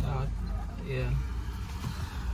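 Car engine idling, a low steady rumble heard inside the cabin, under two short quiet spoken replies.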